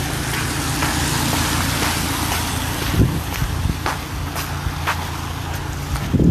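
Road traffic: a vehicle engine humming steadily close by under a loud hiss of tyre and road noise, with a few sharp clicks along the way.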